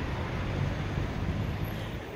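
Road traffic noise: a vehicle's low rumble and tyre noise going by, fading slightly toward the end.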